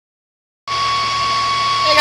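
A steady droning background hum with a constant high-pitched whine, starting abruptly just over half a second in.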